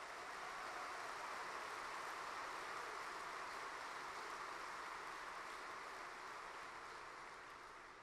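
Audience applauding, a steady wash of clapping that fades away near the end.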